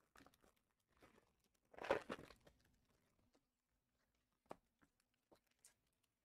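Mostly near silence, broken about two seconds in by a brief crinkle of foil trading-card pack wrappers being handled, and a small click later on.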